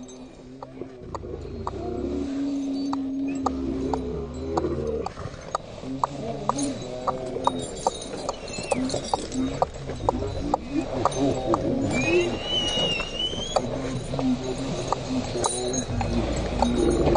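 Harnessed sled dogs yelping and howling in excitement, with one higher rising cry about twelve seconds in and a run of sharp clicks throughout.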